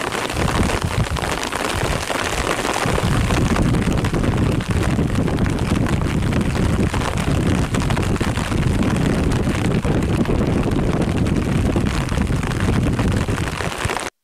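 Floodwater of a swollen river rushing, with wind rumbling on the microphone that grows stronger about three seconds in. The steady noise cuts off abruptly at the very end.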